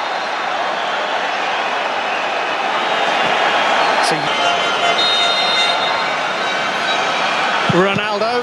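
Steady noise of a large stadium crowd at a football match, heard through a TV broadcast, with faint whistling tones in the crowd about halfway through.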